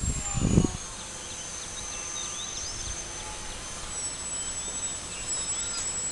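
Distant high-pitched whine of a small RC delta-wing plane's motor in flight. It holds a steady pitch, then drops in pitch twice, over open-air background noise with scattered small chirps.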